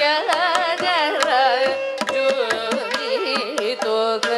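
Live Carnatic vocal music: a woman sings with heavily ornamented, sliding pitch over a steady tanpura drone. Violin accompanies her, with frequent sharp strokes from the mridangam and ghatam.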